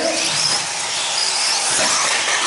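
Several electric 4WD RC buggies, Team Associated B74s among them, running on a dirt track: a steady haze of motor and tyre noise, with high electric-motor whines that come and go.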